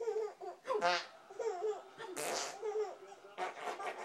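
Baby laughing in short repeated bursts while being nuzzled and played with, with a couple of louder breathy squeals.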